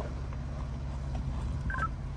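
Ford Bronco's engine idling with a steady low hum as the SUV crawls slowly down a rock ledge. A short high beep sounds near the end.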